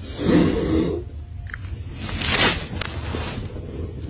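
A person's voice: a short murmured sound near the start, then about two seconds in a harsh, breathy, cough-like burst, over a steady low hum.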